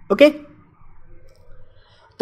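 A lecturer's voice says a short 'okay?', then a pause with only faint room tone.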